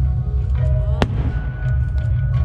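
A single aerial firework shell exploding: one sharp bang about a second in, over a steady low rumble.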